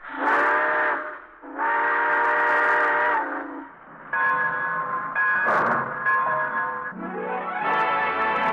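Steam locomotive chime whistle blowing two long blasts and then a third on a different chord, as a radio sound effect, before orchestral music swells in near the end.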